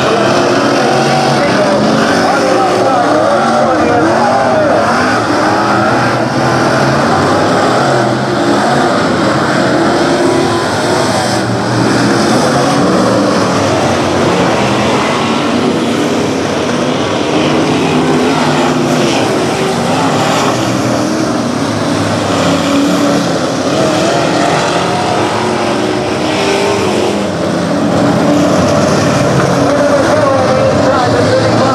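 A field of B-Mod dirt-track race cars racing, their V8 engines loud and continuous, the engine notes rising and falling as the cars run through the turns.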